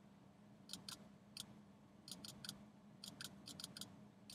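Faint, sharp clicks of a computer mouse, about a dozen in quick pairs and clusters, over a low steady hum.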